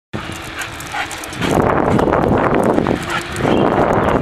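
Wind rushing over the microphone and road noise from a moving bicycle, with sounds from a dog running alongside; the rushing gets much louder about a second and a half in and drops briefly around three seconds.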